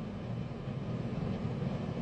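Steady low background hum with no speech, even in level throughout.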